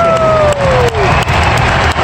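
Basketball arena crowd noise, a dense steady mix of cheering and applause, with one voice calling out long and falling in pitch over it at the start.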